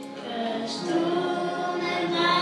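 A church vocal group, several voices singing a hymn together, holding long notes and growing a little louder about half a second in.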